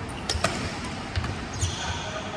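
Badminton doubles rally on an indoor court: a few sharp racket strikes on the shuttlecock and dull footfalls on the court mat. A brief high shoe squeak comes near the end.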